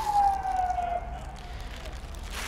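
Emergency vehicle siren wailing in the distance, one long tone sliding slowly down in pitch and fading out about a second in.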